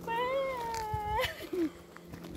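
A long, high-pitched vocal call, about a second long, rising a little then falling, with a short lower falling sound just after it.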